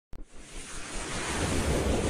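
Intro sound effect for an animated logo: a short click, then a rushing whoosh of noise that swells steadily louder.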